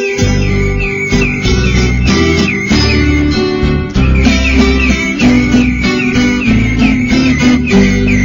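Viola caipira, the Brazilian ten-string guitar, playing an instrumental tune in cebolão tuning: quick plucked notes over a low accompaniment.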